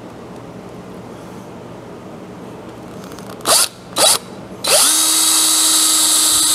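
DeWalt cordless drill with a countersink bit: two short bursts on the trigger a little past halfway, then a steady run from about three-quarters of the way in as it bores a countersunk pilot hole into a wooden board.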